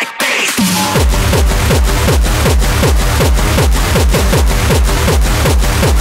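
Hard tekno DJ mix: a short break with the bass pulled out, then a fast, steady kick drum drops back in about a second in, each kick falling in pitch, under dense electronic layers.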